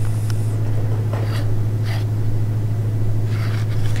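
A steady low hum, with a few faint, soft clicks over it.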